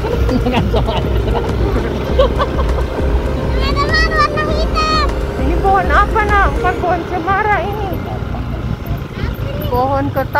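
Motorcycle engine running with wind noise on the microphone while riding up a dirt track, a steady low rumble throughout. A person's voice comes in twice over it, about four and six seconds in.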